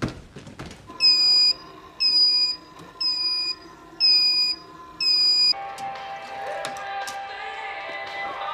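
An electronic beeper sounds five times, a loud high beep of about half a second roughly once a second. Soft background music follows.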